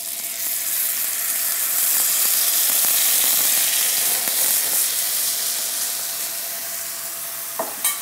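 Watery barbecue sauce hitting a hot oiled pan around a chicken breast, sizzling loudly. The sizzle builds over the first couple of seconds, then slowly dies down as the pan cools under the liquid.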